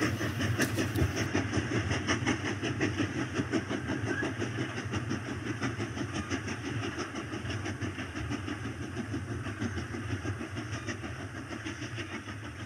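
A motor or engine running with a rapid, even beat, slowly fading out.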